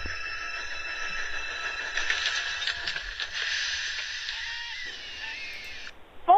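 Dubbed train-derailment sound effect: a steady high-pitched squeal of locked wheels, joined about two seconds in by a noisy clatter and crashing. It cuts off abruptly near the end.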